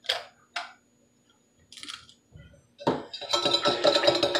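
A metal spoon against the inside of an insulated tumbler, stirring salt into hot water to dissolve it. Two light clinks come in the first second, then a quiet spell, then steady clinking and scraping as the stirring picks up from about three seconds in.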